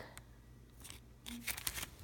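Soft rustling and crinkling of plastic-wrapped sticker packs being handled and turned over, with a few short crisp clicks in the second half.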